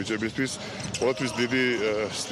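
A man talking, with handballs bouncing on the hard court floor of a sports hall behind his voice.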